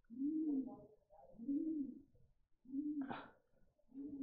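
A pigeon cooing faintly: three soft coos about a second and a half apart, each rising and falling in pitch. A brief click comes just after the third coo.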